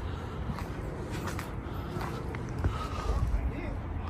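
Footsteps on dirt and litter, with wind rumbling on the microphone and a faint, indistinct human voice.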